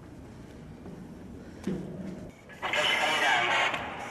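A voice coming through a handheld two-way radio with static, starting about two and a half seconds in and lasting about a second, after low murmured voices.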